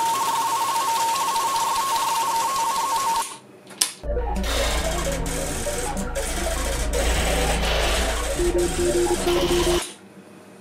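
Electronic sci-fi machine sound effects played by an Arduino MP3 player module through a small speaker. First a hiss with rapid high beeps, which stops about three seconds in, then a click. After that comes a second effect with a low hum, fast chattering blips and clicks, and a steadier beep near the end, cut off suddenly.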